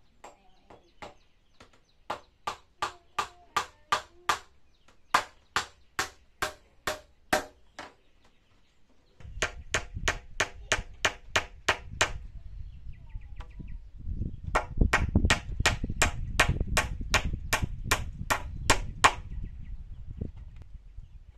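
Claw hammer driving nails into wooden boards: runs of quick, evenly spaced blows, about three a second, with a pause of a couple of seconds partway through. Low rumbling noise under the blows in the second half.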